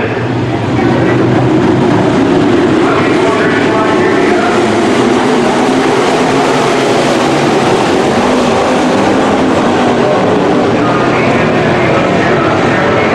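A pack of IMCA modified dirt-track race cars running together, their engines a loud, steady, unbroken drone that steps up in loudness about a second in.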